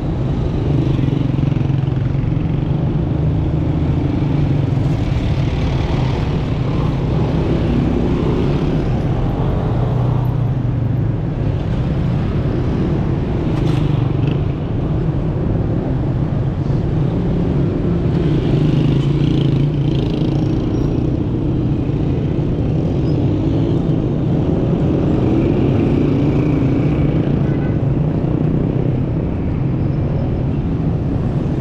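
Busy city street traffic: cars, taxis and motorcycles running and passing close by, a steady dense hum of engines and tyres.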